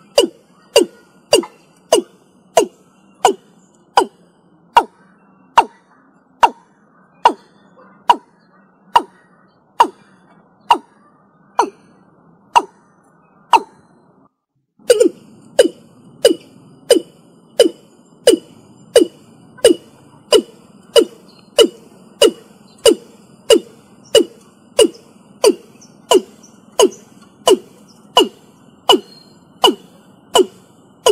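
Watercock (Gallicrex cinerea) calling a long series of low, hollow notes, each dropping quickly in pitch. The notes slow through the first half, break off briefly about 14 seconds in, then resume faster, about two a second.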